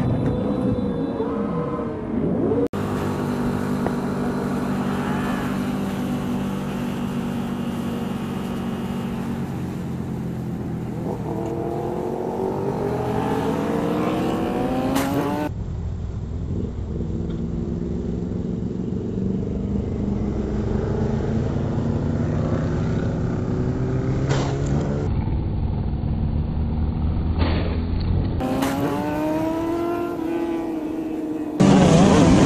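Motorcycle engines heard from onboard cameras across several spliced clips, the sound changing abruptly at each cut. The engine runs steadily, and its pitch rises as the bike accelerates around the middle and again near the end.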